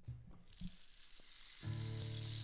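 Faint low rumble and hiss fading in, with a couple of light clicks. About one and a half seconds in, background music comes in with a steady held chord.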